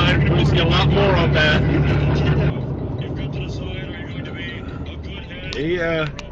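Car cabin noise: a steady low engine and road drone with talk over it, which cuts off suddenly about two and a half seconds in, leaving quieter road noise.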